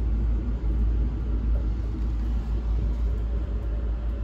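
Steady low rumble of an ICE train running, heard from inside the carriage.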